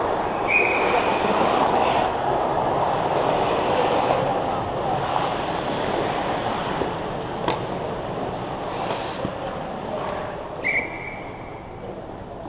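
Ice hockey rink sound: skates on ice and distant shouts, with a short referee's whistle blast about half a second in and another near the end, and a single sharp knock midway.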